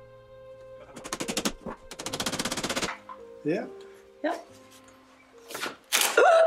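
A power tool rattling in two bursts of rapid, even knocks, about eighteen a second: a short burst about a second in, then a longer one of about a second, over soft background music.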